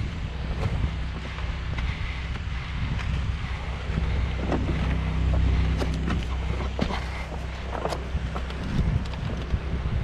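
Wind rumbling on the microphone, with scattered light clicks and taps of a person climbing over clay barrel roof tiles.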